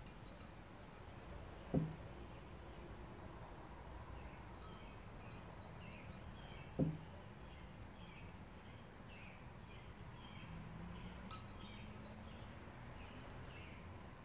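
Quiet background with faint short bird chirps repeating through the second half, and two dull thumps, about two and seven seconds in.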